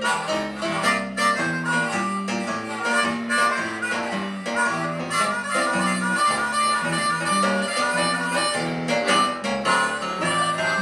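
A blues band playing an instrumental break: harmonica takes the lead with held and bending notes over guitar accompaniment and a repeating low line.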